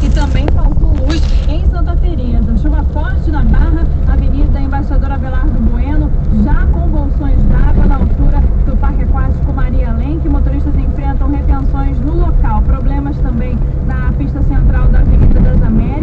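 Steady low rumble of a car's engine and tyres on a wet road, heard from inside the cabin, with talk from the car radio running over it.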